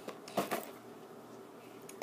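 Two brief rustles of a glossy binder being handled in the first half-second, then quiet room tone.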